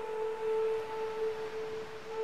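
Flute holding one long, steady low note in slow meditative music, over a faint even hiss.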